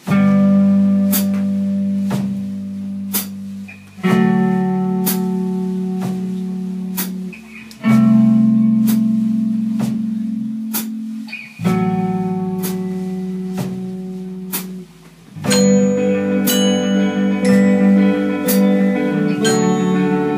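A band playing a song's opening: guitar chords, each struck and left ringing for about four seconds, over a light percussion tick about once a second. The music grows fuller about fifteen seconds in.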